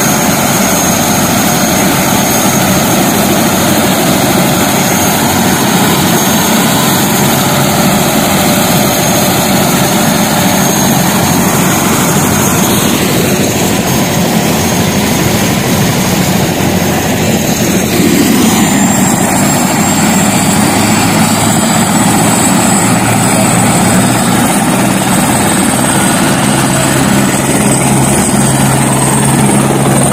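Turbine helicopter running on the ground with its rotor turning: a loud, steady rotor and engine noise with a high turbine whine. About eighteen seconds in, the whine rises in pitch and the sound gets a little louder.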